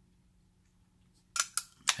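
A hush, then about a second and a half in, two or three short sharp clicks in quick succession.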